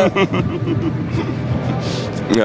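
A man chuckling softly over a steady low rumble, with faint music underneath.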